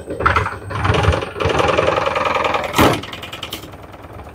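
Super General top-loading washing machine running its spin cycle: the motor and drive spin the drum with a mechanical whir that starts just after the beginning, holds for about three seconds with a sharp knock near the end, then tapers off. It is running again after its corroded wiring harness connector was replaced.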